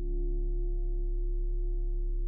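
Outro music drone: several steady held tones over a deep low hum, swelling in slightly at the start and then holding level.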